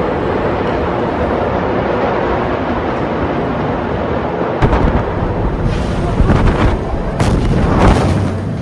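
Ammonium nitrate explosion heard on amateur phone recordings: a loud continuous rumble, then several sudden blasts from about four and a half seconds in, the loudest near the end.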